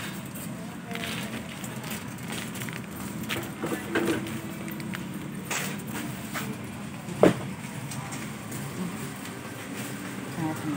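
Busy store ambience with people's voices in the background and the rustle and knock of plastic-packed goods being handled, with one sharp click about seven seconds in.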